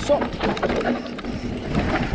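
Mountain bike rolling fast down a dirt trail, heard from a camera on the bike: tyres on loose dirt and roots with scattered rattles and knocks from the bike, over a steady rumble of wind on the microphone.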